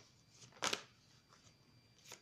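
Tarot cards being handled as cards are drawn from the deck: one sharp click a little over half a second in, with a few faint rustles.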